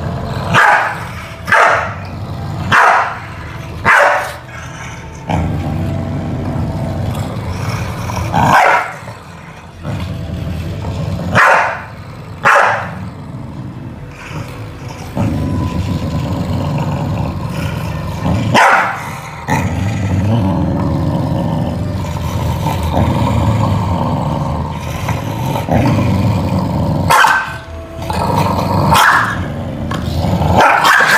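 Two corgis squabbling: repeated sharp barks between long stretches of low, continuous growling, the growling heaviest in the second half.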